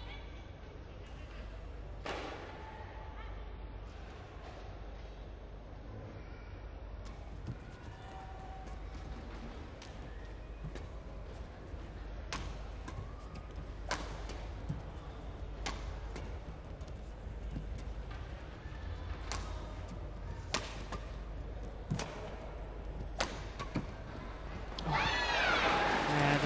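Rackets striking a shuttlecock during a badminton doubles rally, sharp hits every second or so, over a steady arena crowd murmur. The crowd cheers loudly near the end as the rally finishes.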